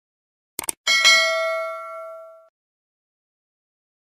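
Subscribe-button animation sound effect: a quick double click, then a single notification-bell ding that rings out for about a second and a half.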